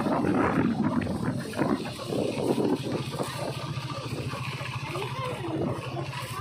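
A small motorcycle engine running steadily under way, a low pulsing drone.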